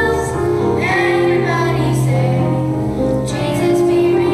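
A group of children singing a Christmas song together over instrumental accompaniment, with a steady held bass note under the voices.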